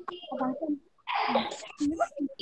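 Speech only: short, indistinct talk, softer than the teacher's voice either side, broken by a brief pause about a second in.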